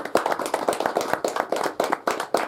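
Applause from a small audience: many separate hand claps, dense and irregular, at the end of a recited poem.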